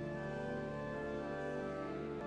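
Church organ playing slow, sustained chords of long held notes.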